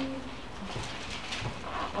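Faint rustling of thin Bible pages being turned at a pulpit, after a short low hum of a man's voice at the very start.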